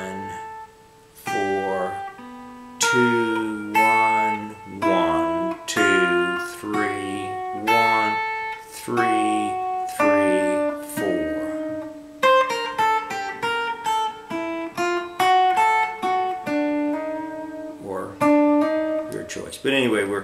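Ibanez AG95 hollow-body archtop electric guitar, amplified, playing a single-note lead melody one picked note at a time, with a quicker run of notes about two-thirds of the way through.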